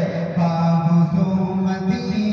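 A male qari chanting in long held notes into a handheld microphone, heard through the amplification. His pitch dips slightly in the middle and rises again near the end.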